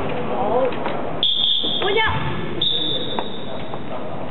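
Referee's whistle blown twice in a sports hall, a longer blast about a second in and a shorter one a little later, over voices echoing in the hall.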